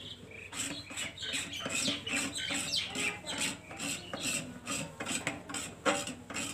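Stainless-steel plate being scrubbed by hand with a scrubber: quick rasping rub strokes, about three or four a second, with a sharper knock near the end.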